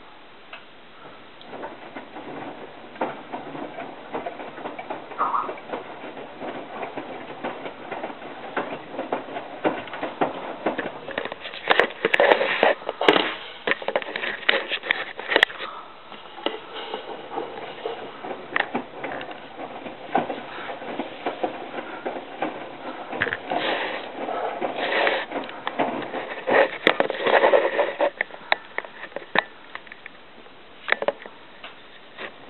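Miele WT2670 washer-dryer drum turning a wet load of towels: irregular sloshing, slapping and clicking as the towels are lifted and dropped through the water. It starts about half a second in, eases briefly about halfway, and stops just before the end.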